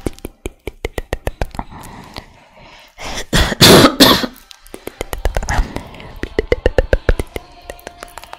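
ASMR mouth sounds made right at the microphone: a quick run of wet clicks and pops, broken by a loud rough breathy burst, cough-like, lasting about a second from three seconds in.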